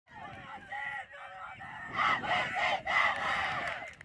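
A group of girls shouting and cheering together in a team huddle. The high-pitched voices grow louder about two seconds in.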